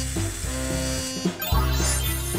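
Background music with sustained notes over a steady pulsing bass line.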